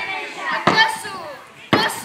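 Children's voices speaking and calling out, with two loud, sudden shouts, the first just over half a second in and the second near the end.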